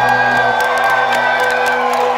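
Live rock band playing loud in a club, with held guitar tones ringing over cymbal hits, and the crowd cheering and whooping. The low end drops away about a quarter of the way in.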